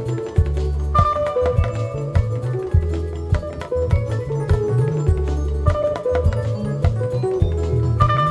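Live band music played loud through a sound system: a steady drum beat with a heavy bass line and melodic instrument lines, without vocals.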